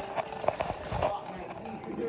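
Handling noise from a phone held in the hand and moved about: a few soft knocks and rustles.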